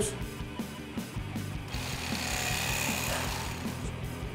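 Electric fillet knife running, its motor-driven reciprocating blades buzzing as they cut in behind the rib cage of a largemouth bass fillet.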